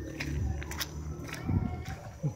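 Footsteps crunching on a gravel path, roughly two steps a second, over a low rumble.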